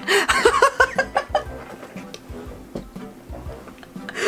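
A young man laughing hard in short bursts for about the first second and a half, then more quietly, over music.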